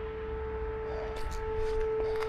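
A steady howl held at one unwavering pitch with fainter overtones, over a low rumble.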